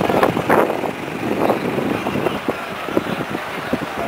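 Road traffic with a truck driving past, mixed with the noise of a crowd gathered outdoors.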